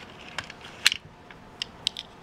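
A few sharp plastic clicks and clacks as a die-cast toy car is lifted out of a plastic race-track starting gate, the loudest a little under a second in.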